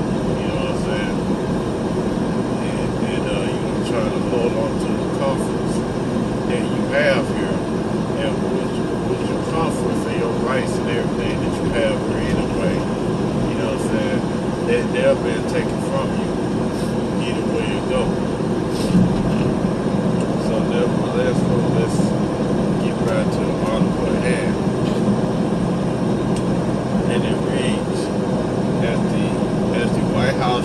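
Steady drone of a truck's engine and road noise heard inside the cab while driving at highway speed.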